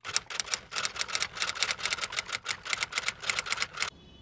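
Typewriter sound effect laid over letters typing onto a black title card: a rapid run of sharp key clacks, about six or seven a second, that stops shortly before the end.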